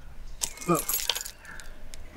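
A set of car keys jangling, a quick cluster of bright metallic jingles lasting about half a second, starting about half a second in.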